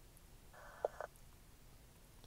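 Faint sound from an Icom IC-2730 transceiver as its tuning dial is turned: about half a second in, a brief muffled burst of sound from the radio with a short tone in the middle of it, otherwise nearly quiet.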